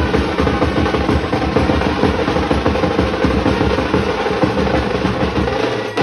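Procession brass band playing loudly: hand-held drums beaten in a fast, continuous roll, with trumpets and other brass horns playing over them.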